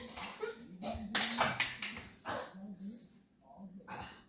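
A dog barking a few times in short, sharp bursts, with a voice underneath.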